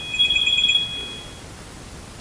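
A high electronic tone of two pitches held together, warbling rapidly for about half a second, then fading out around the middle.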